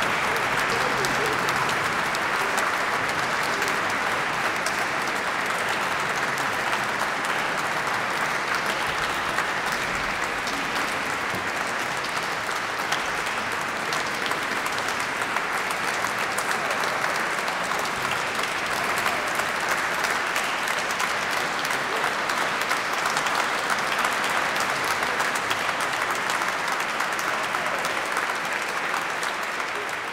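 Large audience applauding steadily, a dense, even clapping that tails off slightly near the end.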